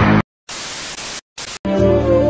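Heavy music cuts off abruptly, followed by two bursts of TV-style static hiss separated by a brief silence, a video transition effect. A soft new music track starts near the end.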